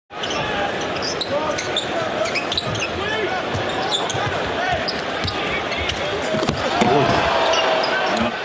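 Live basketball game sound on a hardwood court: sneakers squeaking, the ball bouncing and a crowd murmuring, with the crowd noise swelling near the end.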